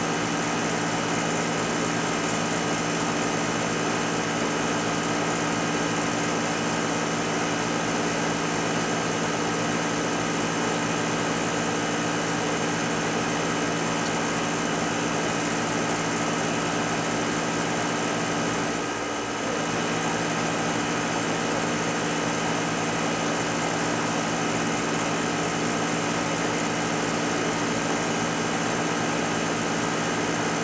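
A machine hums steadily at a constant pitch throughout, with a brief dip in level about two-thirds of the way through.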